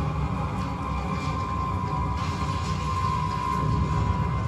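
Film sound effects of a burning city: a deep, steady rumble of fire with faint crackling and a steady high tone held through it, played over cinema speakers.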